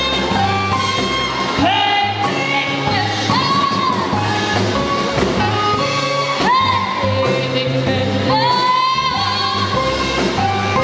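Live jazz-cabaret band playing with keyboard, drums, upright bass and saxophone. A lead line sounds in long swooping phrases over steady bass notes.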